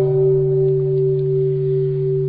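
A steady, sustained low ringing drone from the backing music of a Buddhist chant, held between two chanted lines. It has two main pitches and no change until the chanting voice returns.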